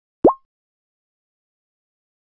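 A short synthetic 'bloop' pop sound effect, a quick upward pitch sweep, heard once about a quarter second in. It marks a box popping into view in a slide animation.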